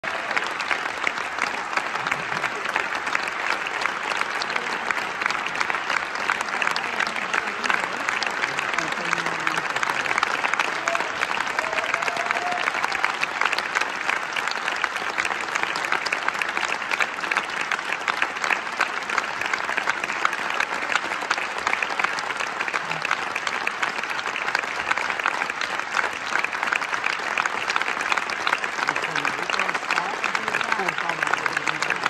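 Theatre audience applauding steadily, many hands clapping at once.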